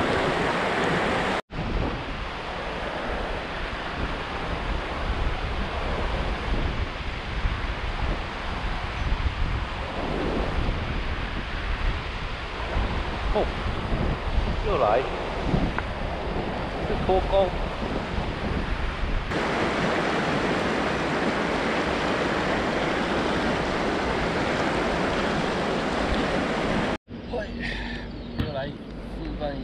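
Shallow river rushing over rocks, a steady roar of water with wind buffeting the microphone. The sound cuts out abruptly for a moment about a second and a half in and again near the end.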